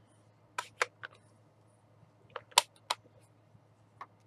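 Sharp plastic clicks and knocks from a stamp ink pad case and a clear acrylic stamp block being handled and set down on the table: a cluster of three clicks about half a second in and another three around two and a half seconds in, the loudest of them in the second cluster.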